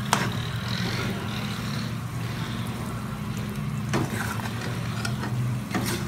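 Raw chicken pieces frying in spiced oil in a wok, sizzling with an even hiss as they are stirred with a ladle, with a few sharp knocks of the ladle against the pan: at the start, about four seconds in and near the end. A steady low hum runs underneath.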